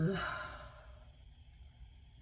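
A woman's sigh into a close microphone, a breathy exhale that starts with the tail of an 'uh' and fades away within about a second: a sigh of exasperation at a fumbled line.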